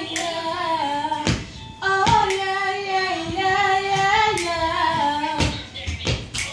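A girl singing unaccompanied, holding long notes that slide from pitch to pitch, with a short break about a second in. A few sharp clicks sound among the notes.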